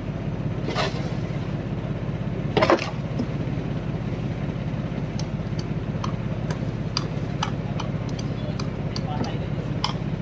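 Fishing boat's engine running with a steady low drone. There is a short, loud clatter about three seconds in and a smaller one near the start, then scattered light clicks.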